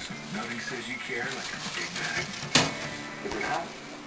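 Faint voices and music in the background, with one sharp knock about two and a half seconds in.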